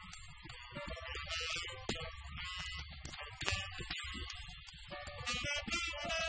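Jazz quartet of saxophone, piano, acoustic bass and drums playing, with frequent drum and cymbal strikes over the pitched lines of the horn and piano.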